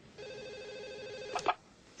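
Telephone ringing once, a fast trilling ring lasting a little over a second, cut off by a couple of sharp clicks as the handset is picked up.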